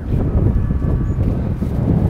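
Wind buffeting the microphone outdoors, an uneven low rumble that rises and falls.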